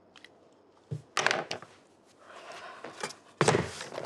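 Small objects handled and set down on a table: a soft thud just before a second in, then a clatter, a stretch of rustling, and a louder knock near the end.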